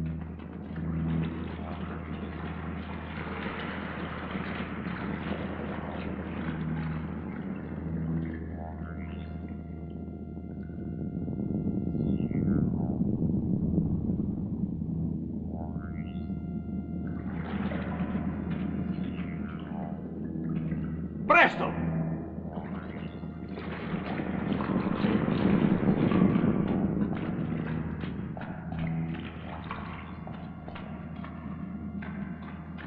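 Film soundtrack of eerie electronic music: a steady low drone with pulsing, held synthesizer tones and swelling processed effects. A single sharp, loud burst cuts through about 21 seconds in.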